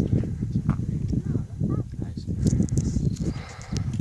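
Wind buffeting the microphone: a loud, gusting low rumble that starts abruptly, with a few sharp clicks in its second half.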